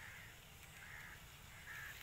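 Faint bird calls in quiet open air: three short calls just under a second apart.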